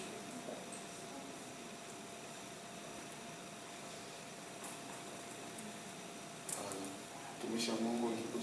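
Quiet room tone of a hall with a faint steady hum and a couple of small clicks; a man's voice starts near the end.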